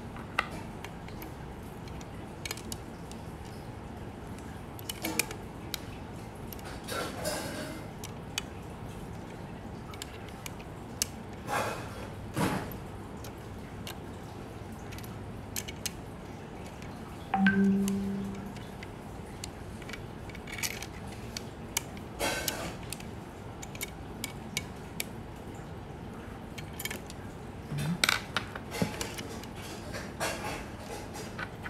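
Scattered light clicks, taps and small metallic knocks of a Canon F-1 film camera body and its parts being handled and turned over. Just past halfway comes a brief low tone, the loudest sound.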